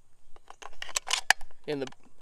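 A Hi-Point 9 mm carbine's magazine being handled and slid into the magazine well in the rifle's pistol grip: a quick series of small clicks and scrapes, with one sharp click a little over a second in.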